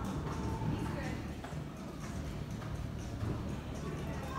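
Hoofbeats of a horse cantering on the sand footing of an indoor arena.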